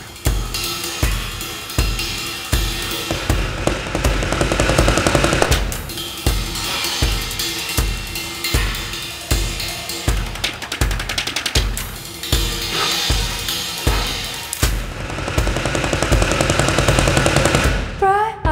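Live drum kit groove: a steady bass drum beat about twice a second under busy snare, hi-hat and cymbal playing.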